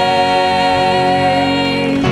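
Gospel singers with electric bass and band holding the long final chord of a song, which ends near the end.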